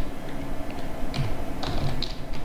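Typing on a computer keyboard: a few separate keystrokes, spaced out.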